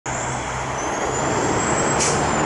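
Diesel freight locomotives running with a steady low engine hum under the rumble of the moving train. A faint, thin high whine holds steady above it.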